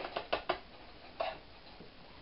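A spoon clicking against a metal baking pan while spreading a soft cheese filling: a quick run of four or five clicks in the first half second, then one more a little past one second.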